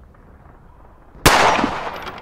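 A single pistol shot about a second and a quarter in: one sharp crack with a tail that dies away over most of a second.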